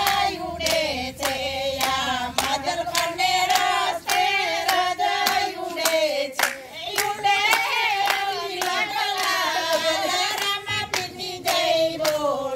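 A group of women singing a devotional song together in unison, keeping time with steady hand claps, about two claps a second.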